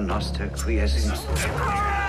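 A man lets out a high, wavering cry about one and a half seconds in, over a low droning music bed and voices.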